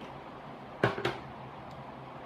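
Two quick plastic knocks, about a fifth of a second apart, as a plastic water bottle and a small plastic measuring cup are picked up and handled, over a low steady room hum.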